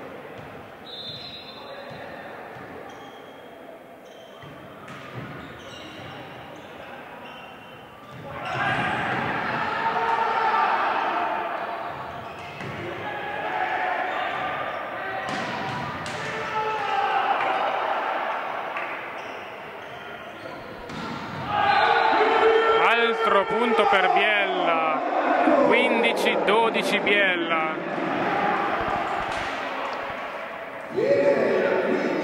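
Indoor volleyball rally: sharp ball strikes echoing in a large hall, with a short whistle near the start. Spectators and players shout and cheer, loudest in the last third.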